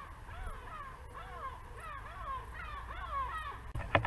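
Several birds calling at once, short harsh arched calls overlapping a few times a second. Just before the end a fast run of loud clicks sets in.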